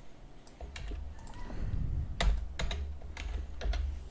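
A few separate keystrokes on a computer keyboard, spaced irregularly, over a low rumble.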